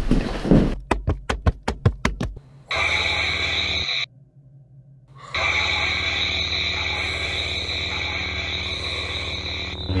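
A quick run of about eight knocks, then the steady electric hum of lightsaber sound effects, a low drone with a bright buzz above it. The hum breaks off for about a second near four seconds in, then resumes.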